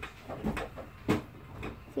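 Homemade glue slime squelching and popping as it is squeezed and stretched between the hands: about four short wet clicks, the loudest about a second in.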